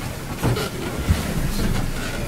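Shuffling and low bumps of people settling back into their chairs at a long table, with dull thuds about half a second and a second in.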